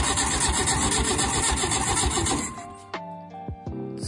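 The starter motor cranks the air-cooled flat-four engine of a 1966 Volkswagen bus, turning it over steadily without firing. It sounds pretty decent, a sign that the engine once thought locked up is not seized. The cranking stops about two and a half seconds in, leaving background music.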